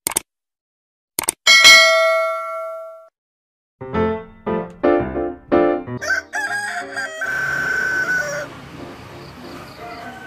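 Mouse-click sound effects and a bright bell ding that rings out and fades, the subscribe-button sting. A short run of musical notes follows, then a rooster crowing as the cue for morning.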